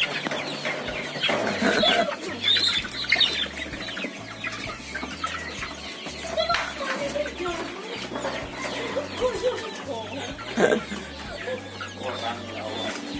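A basketful of young cockerels crammed into a woven bamboo carrier, clucking and squawking in many short, overlapping calls.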